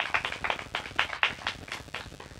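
A small audience clapping, sparse and uneven.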